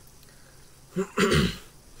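A man coughs once, harshly, about a second in, right after a short spoken word; the cough follows his sip of vinegar, whose taste is still strong.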